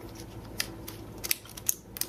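A microSD/SD card being pushed into the card slot of an iFlash Solo adapter board: a few small scraping clicks, the last near the end as the card latches in.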